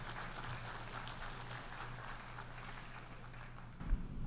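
Audience in a large hall applauding steadily after a speech ends.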